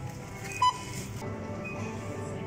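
A single short beep from a self-checkout barcode scanner reading an item, about two-thirds of a second in, over steady background music.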